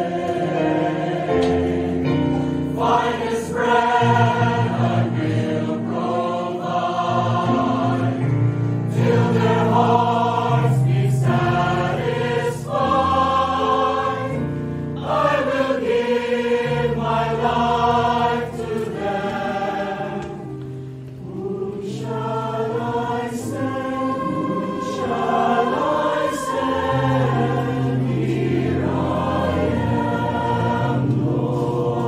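Mixed choir of men and women singing in parts, holding sustained chords that change every second or two, with a brief softer passage about two-thirds of the way through.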